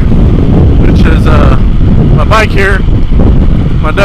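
Heavy wind buffeting on a helmet-mounted microphone on a Yamaha WR450F dirt bike at road speed: a loud, continuous low rumble. Two short snatches of the rider's voice come through it.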